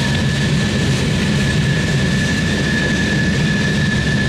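Freight train cars rolling past at speed: a loud, steady rumble and clatter of steel wheels on the rails, with a steady high-pitched tone running through it.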